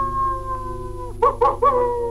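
A canine howl, one long drawn-out call whose pitch sags slowly, broken by three short yelping notes a little past a second in before it draws out and fades, over a soft ambient music drone.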